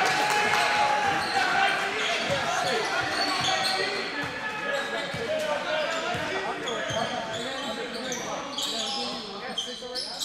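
Basketball being dribbled on a hardwood gym floor, with sneakers squeaking and players and bench voices calling out.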